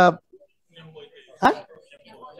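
Speech only: a man's sentence ends at the start, faint voices follow, then one short, sharp, rising interjection, "Ha?", about one and a half seconds in.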